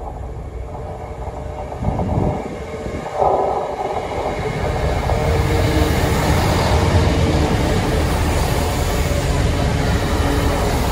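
A multiple-unit passenger train approaches and runs past close by, growing steadily louder as it passes. Its rumble and wheel noise on the rails fill the second half.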